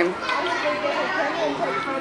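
Children playing and chattering, with several small voices overlapping at a moderate level.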